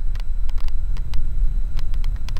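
Street noise picked up on a walking handheld camera: a steady low rumble with irregular light clicks.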